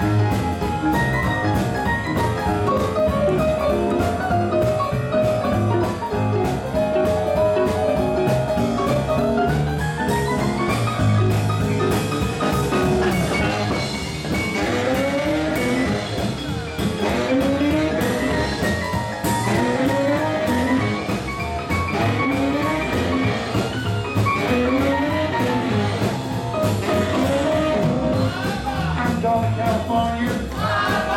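Live swing band playing an instrumental passage, led by a piano solo on a Roland RD-300SX digital stage piano in fast runs over drums. There is a rising run about a third of the way through.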